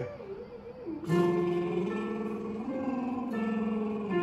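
Electronic keyboard playing a sequence of held chords for a singing warm-up. The chords start about a second in and move to a new chord about every second.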